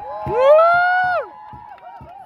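A single voice lets out one long "woo" that rises in pitch, holds, then drops off after about a second, over a steady held tone that fades out shortly after.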